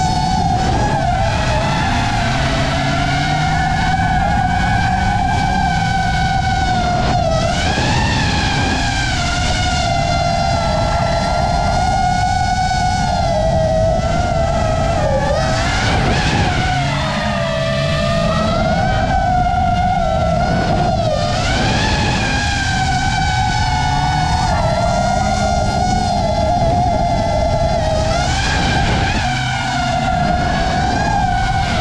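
FPV drone's motors and propellers whining loudly, a strong pitch that wavers and dips with throttle. Underneath, the Honda S2000's engine revs in rising sweeps as the car drifts.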